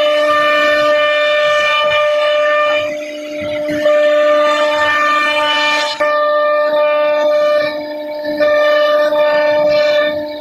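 CNC router spindle whining at a steady high pitch while its bit cuts a pattern into laminated particle board, with a rushing cutting noise over the whine. The sound dips briefly about three seconds in and again near eight seconds as the cut changes.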